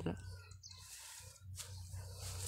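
A man's last spoken word right at the start, then quiet outdoor background with faint animal calls.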